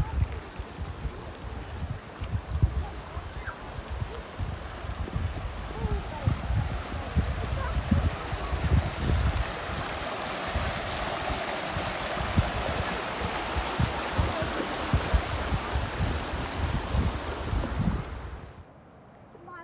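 Mountain creek running over rocks, swelling to a louder rush of cascading water about halfway through, with low thumps on the microphone throughout.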